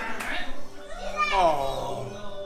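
Excited voices only: people talking and exclaiming, with one high voice sliding down in pitch about a second in.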